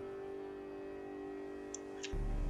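Faint steady hum made of a few fixed tones, with one small tick near the end.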